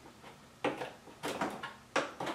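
Plastic knocks and rattles as the Creality K1 AI camera is wiggled down into its mount on the printer frame: three short knocks in the second half.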